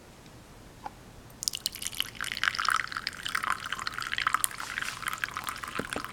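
Water poured in a thin stream into a ceramic teacup of Longjing green tea leaves, starting about a second and a half in and splashing unevenly as the cup fills.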